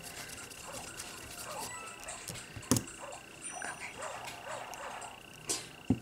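A few sharp clicks, one about halfway through and two near the end, as a metal nail-stamper and stamping plate are handled, over a steady faint high whine and a string of soft short chirps that rise and fall in pitch.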